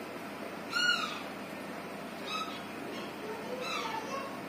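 An animal calling: three short, high-pitched calls about a second and a half apart, the first the loudest.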